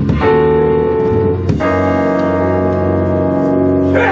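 Keyboard music holding sustained chords, moving to a new chord about a second and a half in.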